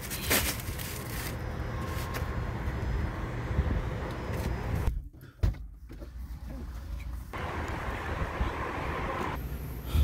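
Steady car and parking-lot background noise with a knock just after the start; the sound drops out briefly about halfway through.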